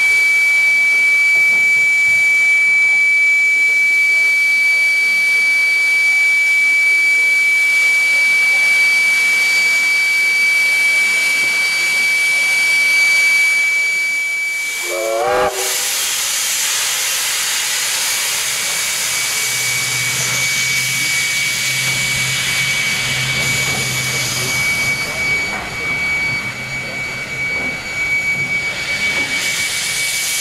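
A Victorian Railways R class steam locomotive letting off steam on the turntable: a steady hiss with a high, even whine through the first half. About halfway through it changes to a louder rush of steam, and a low hum joins for several seconds.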